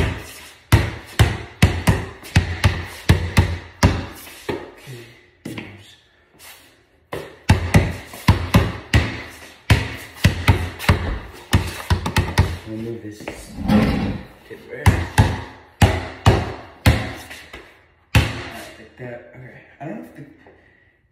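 Basketball dribbled on a concrete floor, bouncing at about two to three bounces a second with a short lull about five seconds in before the dribbling picks up again.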